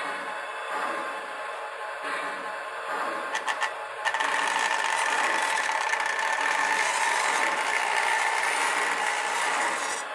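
Prewar Lionel 1668E torpedo steam locomotive running on three-rail O-gauge track, its electric motor and gears giving a steady whine over the rolling of the wheels. A few clicks come just before it gets louder about four seconds in, as it comes close past the microphone.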